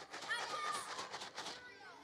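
Kellogg's Corn Flakes box shaken, the flakes inside rattling softly, with faint children's voices underneath.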